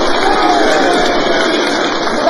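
Live theatre audience laughing and applauding in a loud, sustained swell of crowd noise after a comic punchline, with a few voices rising above it.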